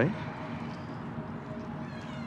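A woman's spoken question ends on a sharply rising 'right?' at the very start. Then comes a pause filled only by a faint, steady background hum.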